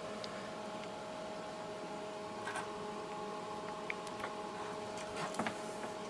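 Quiet, steady hum of the bench test equipment, with a few thin steady tones in it. There are a few faint light clicks midway and near the end as the RF test cables are picked up and handled.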